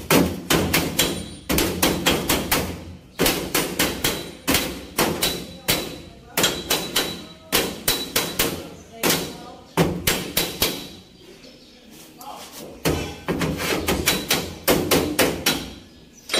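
Hammer blows on the steel body of a Mitsubishi L300 van at a new patch panel over the rear wheel arch. The blows come in quick runs of about four or five a second, each run about a second long, with short pauses between them and a quieter stretch about two-thirds of the way through.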